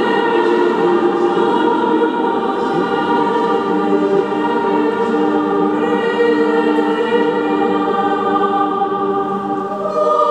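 Youth choir singing together, holding long sustained chords in harmony, with the chord changing about six seconds in.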